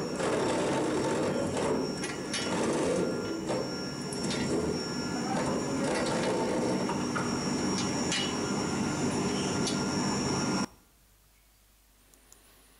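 Helical wedge rolling mill running as it forms red-hot ball pins: dense machine noise with a steady high whine and scattered clicks, cutting off suddenly near the end.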